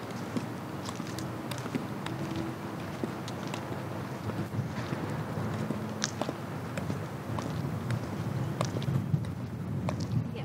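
Slow, careful footsteps in 10-inch-heel platform boots (Pleaser Beyond-2020) on a concrete car park, the heels clicking sharply on the pavement, over a steady low background rumble.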